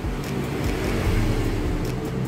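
A steady, low engine hum, as of a motor vehicle running.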